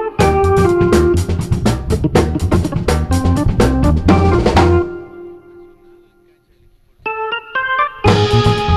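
Funky jazz band playing live: drums, electric bass and a Korg X50 synthesizer keyboard with an organ-like sound. About five seconds in, the band drops out on one held keyboard note that fades almost to silence. In the last second the keyboard plays short chords alone.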